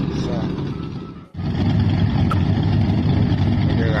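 Motorcycle engines idling with a steady low rumble. The sound cuts out briefly a little over a second in and comes back louder.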